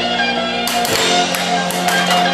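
Music playing throughout, with about five sharp clacks in the second half as the air hockey puck is struck by a mallet and hits the table rails.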